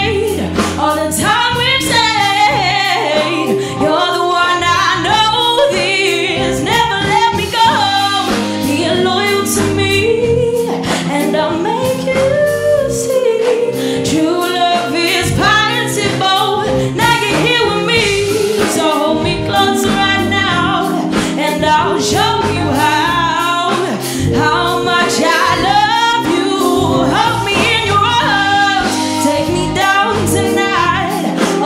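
A woman singing a sustained, melodic vocal line live into a microphone, backed by a band of electric bass, electric guitar, drums and keyboard.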